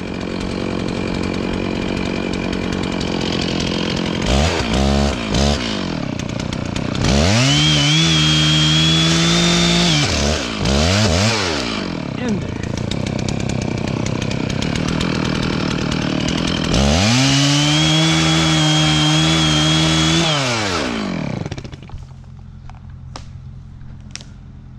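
Stihl two-stroke chainsaw idling, blipped a few times, then held at high revs twice for about three seconds each, dropping back to idle after each. It falls away to a much fainter sound about two seconds before the end.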